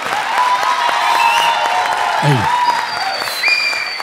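Studio audience and judges applauding, with voices and a few held tones over the clapping.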